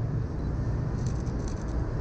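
Steady low rumble of city street ambience with distant road traffic, and a few faint clicks about a second in.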